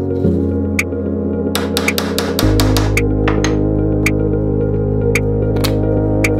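Background electronic music: sustained synthesizer chords that change twice, over a light beat of about one tick a second.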